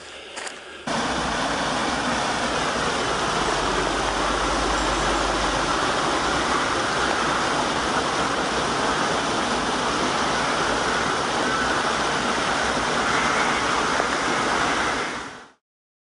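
Small woodland stream cascading over rocks, a steady rush of falling water that starts about a second in and fades out near the end.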